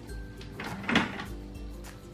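Background music with a few short plastic knocks and clatters from a baby handling toys at a plastic toy workbench, the loudest about a second in.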